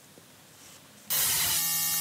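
Near silence, then about a second in a loud hissing static laced with steady tones starts suddenly: the audio track of a video clip starting to play over the hall's sound system, which the presenter says is not playing properly because of a technical problem.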